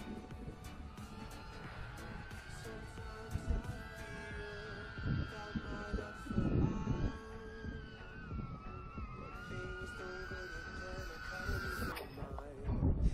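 Small quadcopter's propellers and motors whining at a steady high pitch that wavers with the throttle, dipping about two-thirds of the way through and climbing again near the end, over gusty wind rumble on the microphone.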